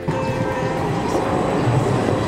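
Background music ends within the first half second. It gives way to a city tram rolling along its street tracks close by, a steady rolling noise.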